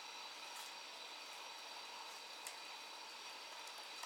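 Quiet courtroom room tone: a low, steady hiss with one faint click about halfway through.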